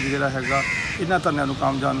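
A man speaking without pause, with a crow cawing behind him in the first second.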